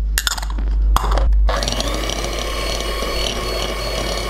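Electric hand mixer beating egg yolks with sugar in a ceramic bowl. After a few short knocks, it runs steadily from about a second and a half in.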